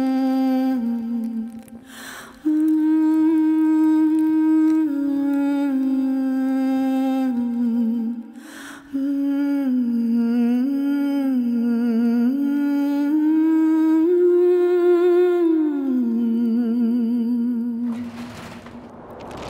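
A woman's wordless vocal, humming a slow, ornamented melody of held notes that bend and waver with vibrato, with two short breaths between phrases.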